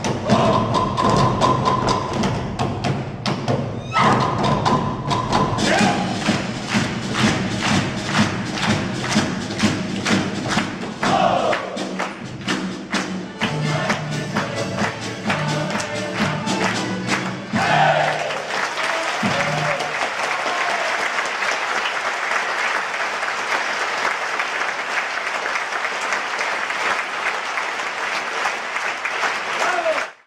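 A Ukrainian folk band of violins and accordions with drums plays a lively dance tune, driven by sharp, regular beats. The music ends about two-thirds of the way through and gives way to steady audience applause.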